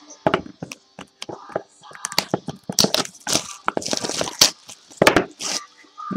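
Trading cards and their packaging being handled: irregular crackles, crinkles and sharp clicks come in quick, uneven bursts.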